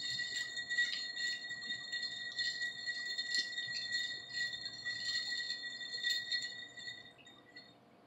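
Ice cubes clinking against a drinking glass as a straw stirs them, the glass ringing with a steady, high chime under rapid little clicks. It dies away near the end.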